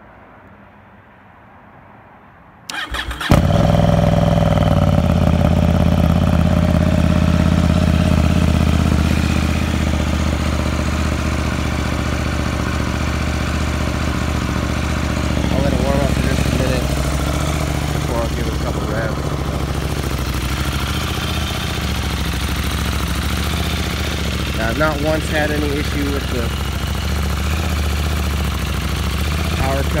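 KTM 890 Duke R's parallel-twin engine on a cold start: a brief burst of the electric starter about three seconds in, then the engine catches at once and settles into a steady idle. It runs a little louder for the first several seconds, then eases down slightly.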